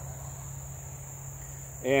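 Insect chorus singing steadily as one continuous high-pitched trill, with a low steady hum underneath.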